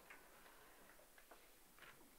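Near silence with faint, scattered clicks and rustles from a choir getting to its feet and handling music folders.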